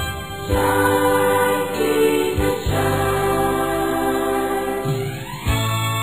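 A choir singing held notes over instrumental accompaniment in a Christian song, with a rising glide in pitch about five seconds in.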